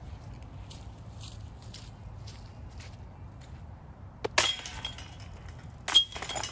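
Metal chains of a disc golf basket clattering and jingling as a putted disc strikes them: one sharp rattle with ringing about four seconds in, and another hit at the very end.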